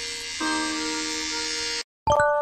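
Background music: sustained reedy notes with a change of note about half a second in, cutting off abruptly just before the end.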